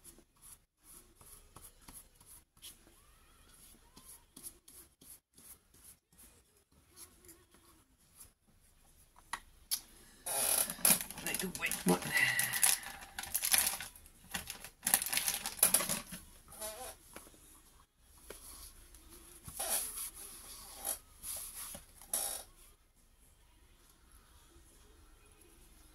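Faint scratchy strokes of a flat brush spreading decoupage glue over a paper napkin. About ten seconds in, a much louder stretch of a person's voice takes over for several seconds, followed by a few softer bursts.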